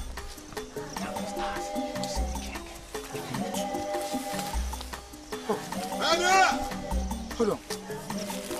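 Background film-score music: held synthesizer notes over a low bass pulse about every two seconds. A short wavering cry rises over it about six seconds in.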